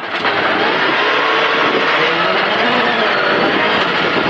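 Skoda rally car's engine running hard at speed, heard from inside the cockpit, its note wavering a little under a steady rush of tyre and gravel noise.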